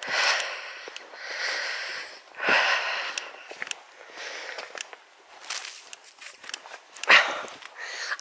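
A walker's breathing close to the microphone, a hissy breath about every second, among small clicks and rustles of footsteps, with one louder burst near the end.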